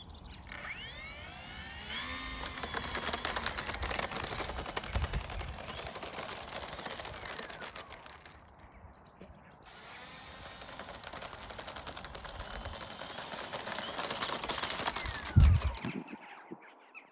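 Small electric motor and propeller of an RC model Hawker Hurricane spinning up with a rising whine, then running as the model taxis on its wheeled dolly, the little wheels rattling over brick paving. The sound drops away briefly about halfway through and returns, with a low thump near the end.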